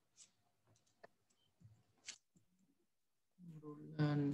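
Near silence with a few faint, short clicks, the clearest about two seconds in; a man's voice starts shortly before the end.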